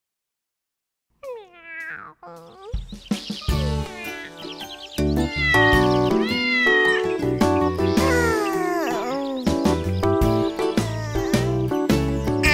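Cartoon kitten meowing: a first meow about a second in, then more falling meows over upbeat children's song music that starts about three seconds in.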